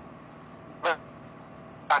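A pause in a woman's talk: a faint steady background hiss, one short voiced syllable a little before the middle, and her speech starting again at the end.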